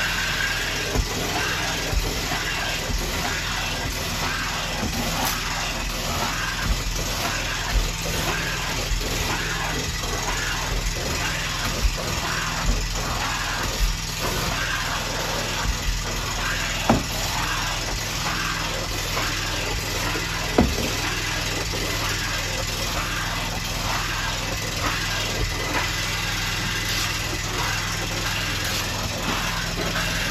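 An engine running steadily with a low, even hum, and a few short knocks scattered through it.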